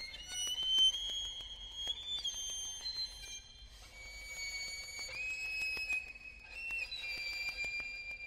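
String trio of violin, viola and cello playing contemporary music: quiet, long-held high notes that move to a new pitch every second or two, with short slides between them.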